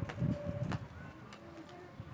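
A bird calling: a short held note in the first second, with a couple of sharp clicks around it and fainter calls after.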